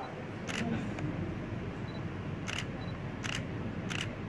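Camera shutter clicks, four in all at irregular spacing, over a steady low room noise.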